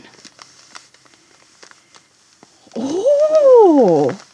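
Faint crinkling and ticking of plastic wrapping as a skein of yarn is drawn out of its packet. Near the end comes a loud, drawn-out vocal call that glides up in pitch and back down over about a second.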